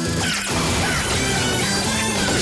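A sped-up, pitched-up 'chipmunk' version of a rock TV theme song, loud and continuous, with crashing hits in the music.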